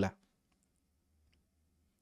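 A man's speech breaks off, then a pause of near silence with a few faint clicks, before his speech resumes.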